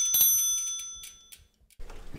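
A bicycle bell rung twice, its ring fading out over about a second, over a fast light ticking. After a short gap, the sound of heavy rain begins near the end.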